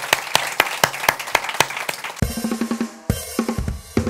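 A drum kit plays a rapid run of snare and cymbal hits. About halfway through it gives way to a short musical sting with sustained bass notes.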